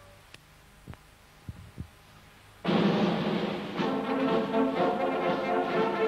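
Near quiet with a few faint clicks, then brass-led music starts abruptly and loudly about two and a half seconds in, with several brass parts sounding together.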